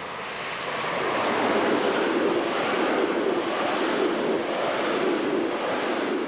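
Electric-locomotive-hauled passenger train passing close at speed: a rushing rumble of wheels on rails. It swells over the first second or so and then holds steady as the coaches go by.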